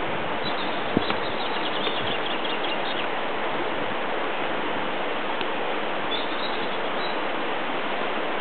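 Birds chirping in short, quick series, about half a second to three seconds in and again around six seconds, over a steady, even rushing noise.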